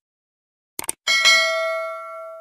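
Subscribe-animation sound effect: a quick double mouse click just under a second in, then a bright notification-bell ding that rings with several tones and slowly fades.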